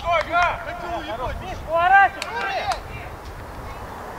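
Footballers' voices calling out on the pitch: a few short, distant shouts near the start and again about two seconds in, quieter in the last second. Low wind rumble on the microphone runs underneath.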